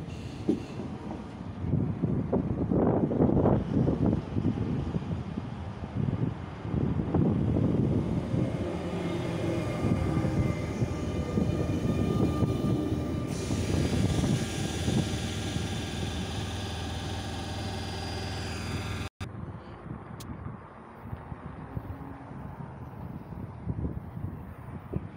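Passenger train running past close to the platform: a loud, fluctuating rumble and rattle of wheels on rail, with a steady high whine joining a little past halfway. It breaks off abruptly near the end, leaving quieter background noise.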